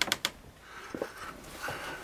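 A quick run of sharp clicks at the start, then two soft knocks about a second apart, as someone goes through the door into a small wooden shack.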